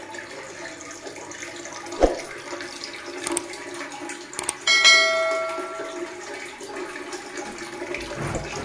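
A bell-chime sound effect rings out about halfway through and fades over a second or so. Under it is a steady hiss of running water, with a single knock about two seconds in.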